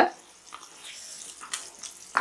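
Wooden spatula stirring chicken pieces through a thick, wet green gravy in a nonstick frying pan, a quiet wet stirring and sizzling noise with a few small clicks.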